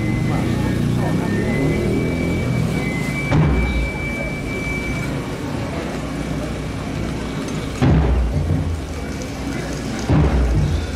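Murmur of a street procession crowd with a dense low rumble, broken by two deep booms about four and a half seconds apart, at about three seconds in and near the end.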